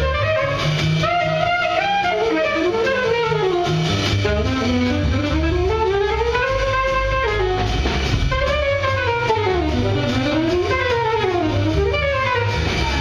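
Live jazz: a trumpet plays a continuous melodic line that rises and falls in long sweeps, over plucked upright bass and drum kit.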